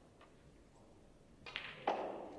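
Snooker balls clacking: a few light clicks, then a sharper knock about a second and a half in and a loud clack near the end, as the potted blue is handled by the referee to be respotted.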